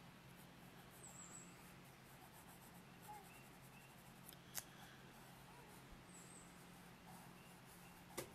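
Near silence with the faint scratching of a graphite pencil drawing strokes on paper, over a low steady hum; a single sharp click about four and a half seconds in.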